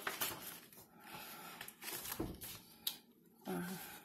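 Paper rustling as a loose planner page is lifted and handled, with a soft knock about two seconds in and a sharp click a little later.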